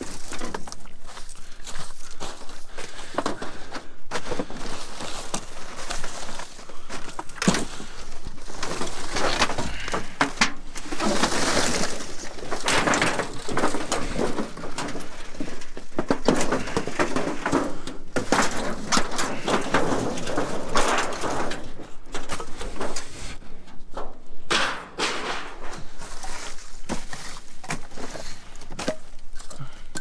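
Rummaging through construction debris in a steel dumpster: boards, drywall, pipe and plastic sheeting scraping, rustling and clattering, with frequent sharp knocks.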